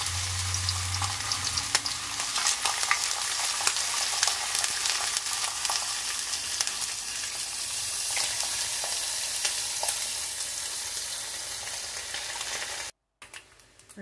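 Bacon strips sizzling and crackling in a hot nonstick frying pan: a steady hiss dotted with many sharp pops. It cuts off abruptly near the end.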